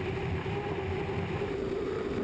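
Turbine-powered unlimited hydroplane running flat out, heard from its onboard camera: a steady high engine whine over the rush of wind and spray.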